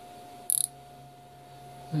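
Micrometer's ratchet stop clicking: a quick cluster of high, light clicks about half a second in, as the thimble is turned until the spindle closes on the part and the ratchet slips. A faint steady hum runs underneath.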